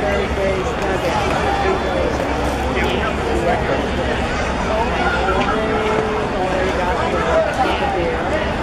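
Ballpark crowd chatter: many spectators talking at once, their voices overlapping into a steady babble.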